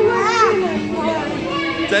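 A toddler's voice: a brief high-pitched cry that rises and falls about half a second in, over adults chattering.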